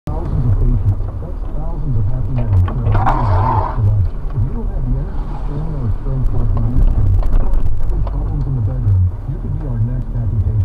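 Jeep engine running at low revs, its note rising and falling with the throttle as it crawls slowly along an off-road trail. Scattered knocks and a brief scraping rush about three seconds in.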